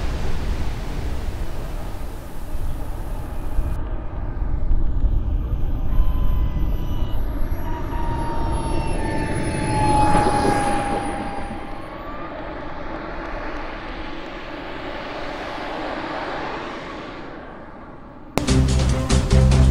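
Whine of a model jet's small turbine engine (80 N class) over a steady rush and rumble as the RC T-33 lands and rolls past, its whistle falling in pitch as it goes by. It then settles to a quieter, lower running sound.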